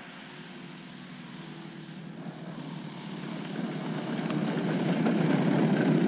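Desert Aircraft DA-70 twin-cylinder two-stroke petrol engine of a large radio-controlled model plane running at low throttle, taxiing on the ground after landing and growing steadily louder as it comes closer.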